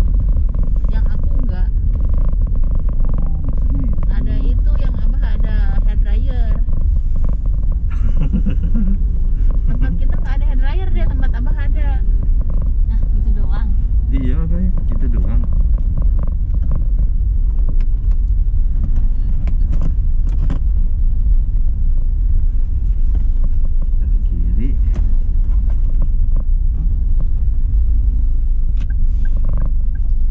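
Steady low rumble of a car driving, heard from inside the cabin, with indistinct voices through the first half.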